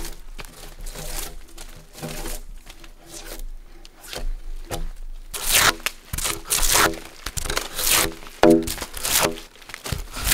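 A steel draw knife pulled in repeated strokes along a log, scraping and tearing strips of bark off the wood. The strokes are softer at first and come louder and quicker in the second half.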